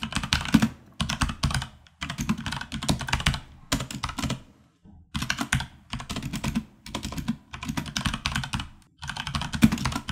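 Fast typing on a computer keyboard, in runs of about a second broken by short pauses.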